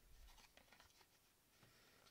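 Near silence: faint scratching and small clicks of fingers working at a small cardboard box to get it open.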